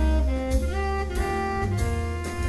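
Live jazz combo: a saxophone plays a quick run of notes over walking upright bass and a drum kit with cymbal strikes.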